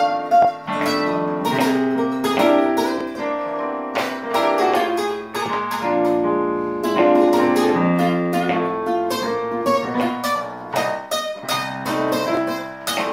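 A nylon-string classical guitar and a Yamaha digital piano play a blues together in F, the guitar picking single-note lines over the piano's chords.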